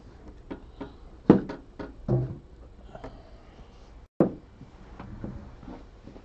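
A string of light clicks and knocks, like objects being handled or set down on a table, with three louder knocks about a second, two seconds and four seconds in.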